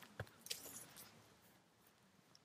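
Near silence, with a few faint clicks and a soft gritty rustle in the first second from fingers working fertilizer into loose garden soil.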